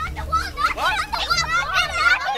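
A group of young children's voices, several talking and calling out at once in high pitches.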